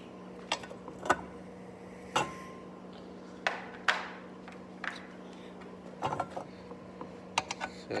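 Irregular sharp metallic clinks and knocks of engine parts and tools being handled while parts are fitted back onto a small engine, over a steady low hum.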